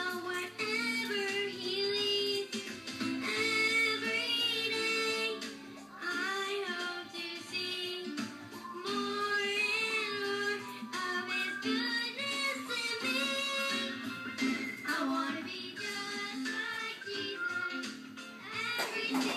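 Young girls singing a song into microphones over musical accompaniment, played back through a television's speakers.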